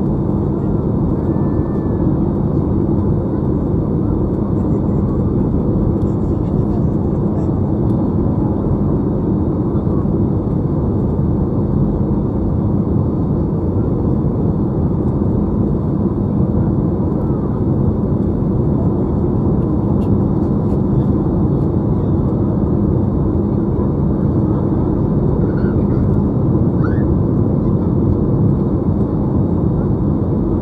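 Steady cabin noise of a jet airliner in flight, heard from a window seat over the wing: engine and rushing air with a constant low hum.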